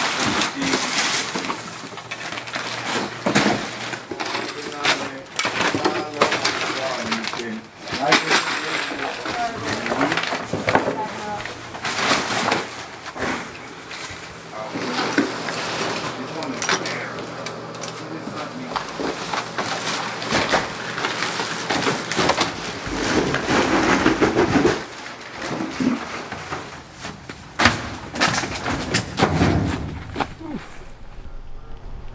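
Plastic bags, paper and cardboard rustling and crackling as hoarded trash is handled and sorted by hand, with many short crackles and knocks.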